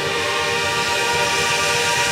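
A drum corps horn line of marching brass holding one loud sustained chord, which swells slightly and is released near the end.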